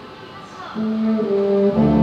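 Wind band of brass and woodwinds playing. After a short lull, sustained notes come in under a second in, and the full band joins with low brass, louder, near the end.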